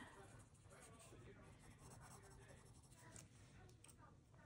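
Near silence with the faint scratch of a colored pencil shading on paper.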